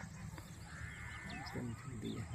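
Faint outdoor bird calls: one longer call lasting about a second, starting just under a second in, among small scattered chirps.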